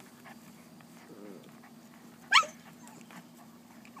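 Eight-week-old puppy giving one short, loud yelp that sweeps up in pitch a little over two seconds in, the cry of a pup nipped too hard while play-fighting with a littermate. A faint low growl comes about a second in.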